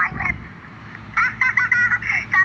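A young child's high, shrill voice in short bursts during a quarrel: two quick cries at the start, then a rapid run of sharp bursts from about a second in.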